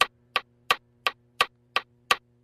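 Count-in before the song: six sharp, evenly spaced clicks, about three a second, over a faint steady hum.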